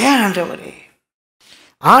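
Speech only: a man's voice drawing out one utterance that rises and then falls in pitch, a short breath about halfway through, then his talk resumes near the end.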